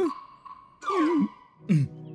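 A man's short wordless vocal sounds, sighs and murmurs with a wavering pitch, three times, the last one falling, over soft sustained background music.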